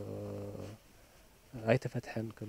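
A man's low voice holds one long, flat-pitched hesitation sound that stops under a second in. After a short pause he starts speaking again near the end.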